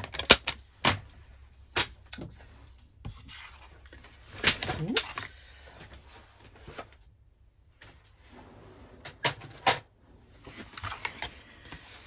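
Stiff cardstock being handled and set down on a craft mat: irregular sharp taps and clicks, with a short rustle of paper a little before the middle.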